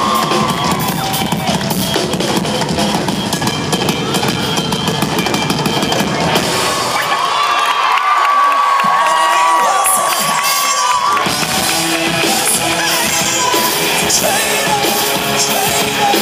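Live rock drum kit played loud through a concert PA, heard from within a cheering audience. About seven seconds in the drums drop away for a few seconds while a high held tone sounds over the crowd, then the full band comes back in.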